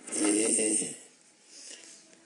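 An elderly man's voice speaking one short phrase, lasting under a second, then a pause.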